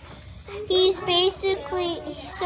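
A child speaking in French, in a high voice, starting about half a second in.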